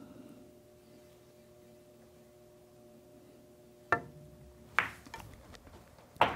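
A pool shot played softly: the cue tip clicks against the cue ball about four seconds in, the cue ball clicks into the three ball about a second later, and a few faint knocks follow as the three drops into the corner pocket. A faint steady hum sits underneath before the shot.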